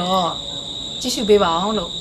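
A steady, unbroken, high-pitched insect drone in the background, with a woman talking over it in two short phrases.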